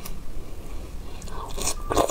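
A large fresh strawberry being torn in half by hand, a few quick wet snaps and tearing sounds clustered near the end.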